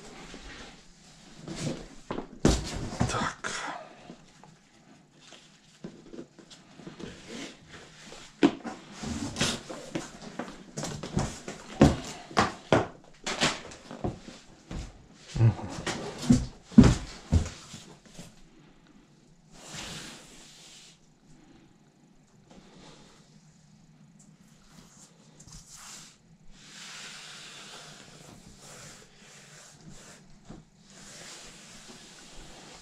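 A deflated inflatable foil board's stiff PVC skin being unfolded and handled: irregular rustling, rubbing and scraping, with a few dull thuds in the busiest stretch about halfway through, then softer brushing sounds in the later part.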